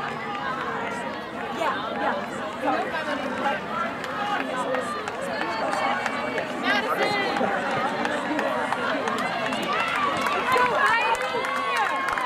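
Crowd of spectators talking and calling out, many voices overlapping, growing somewhat louder near the end.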